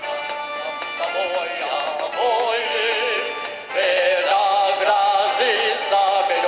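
Men singing a song into microphones over musical accompaniment, their voices wavering with vibrato; the voices come in about a second in and grow louder after a short dip past the middle. It is heard as played through a television set.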